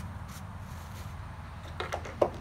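A paper towel rubbing faintly along a mower engine's dipstick as it is wiped clean, over a steady low hum. A couple of light clicks come just before the end.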